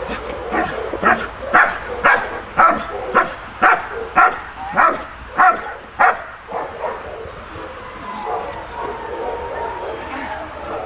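German Shepherd dog barking repeatedly, about two barks a second, then falling quiet about six seconds in.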